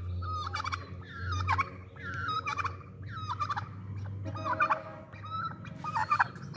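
Domestic turkey gobbling over and over, a string of short rattling calls that fall in pitch.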